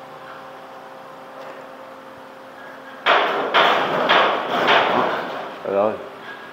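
Loose corrugated metal roof sheeting rattling and banging in the wind, a run of about four loud clattering bangs, roughly two a second, starting about three seconds in after a low steady hum. The sheet is loose and the wind keeps shaking it.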